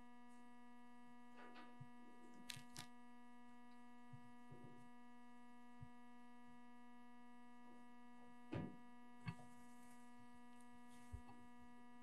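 Near silence: a steady electrical hum in the sound system, with a few faint scattered knocks and clicks, the clearest about eight and a half seconds in.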